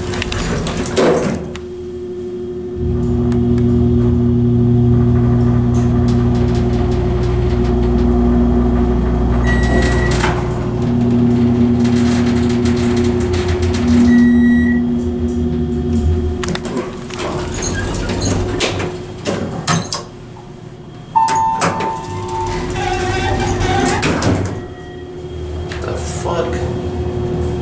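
A 1984 United States hydraulic elevator car travelling. The low hum of the hydraulic drive starts about three seconds in, runs for about thirteen seconds as the car moves, and fades out as it stops. After the stop come knocks and rattles from the doors, and a short two-note electronic chime about five seconds later.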